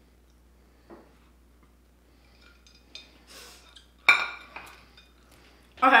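A few faint clicks and rustles, then about four seconds in a sharp clink with a brief ring as a ceramic plate is set down on a stone countertop.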